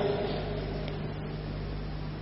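Steady low electrical hum with an even hiss: the background noise of a speech recording in a gap between a man's sentences.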